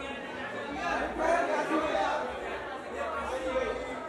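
Chatter of many overlapping voices: press photographers talking and calling out to a guest as she poses, echoing in a large hall.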